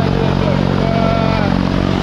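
Propeller aircraft engine running steadily close by, a loud low drone, with voices over it.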